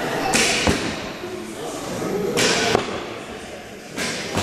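Two arrows shot about two seconds apart, each a short whoosh ending in a thud as it strikes the target.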